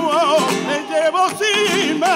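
Live flamenco: a singer's ornamented, wavering vocal line over Spanish guitar and rhythmic palmas (hand-clapping).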